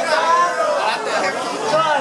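Speech only: several voices talking over one another in a lively chatter.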